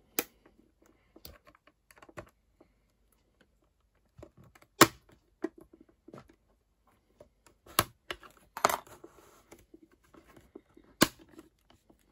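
Metal spatulas prying at the plastic cover of an Apple AirPort Extreme router: scattered small clicks and scrapes of metal on plastic, with several sharp snaps as the cover's clips let go, the loudest about five seconds in.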